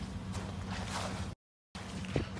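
A steady low hum, like a motor running, under faint outdoor noise; the sound drops out completely for a moment a little past halfway.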